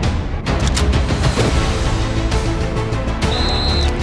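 Tense trailer music with a low pulsing beat and frequent sharp percussive hits; a short high steady tone sounds near the end.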